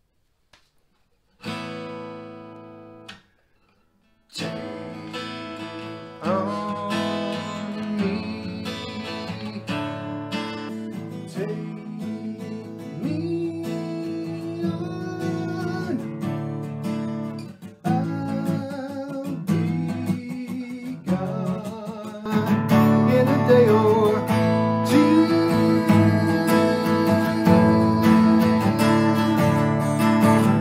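Acoustic guitar strummed while a man sings along. One strummed chord about a second and a half in rings out and stops; steady strumming starts again a couple of seconds later and gets louder past the twenty-second mark.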